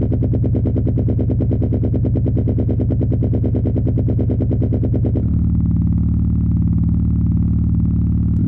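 Electronic music: a low, rapidly pulsing synthesized drone. About five seconds in, its upper layer cuts off, leaving a steady low hum.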